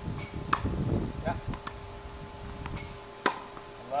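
Tennis ball impacts on a hard court: sharp pocks of a racket striking the ball on groundstrokes and the ball bouncing, about half a second in and, loudest, a little past three seconds in.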